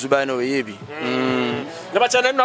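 A man's voice: a few quick syllables, then one long vowel held at an even pitch for most of a second, a drawn-out sound between words.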